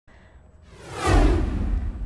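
Broadcast news graphic whoosh: a swept whoosh that swells up from faint and lands on a deep low boom about a second in.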